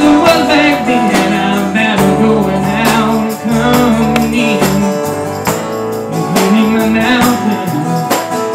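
Live country gospel band playing: acoustic guitar over a drum kit keeping a steady beat, with held notes sounding beneath.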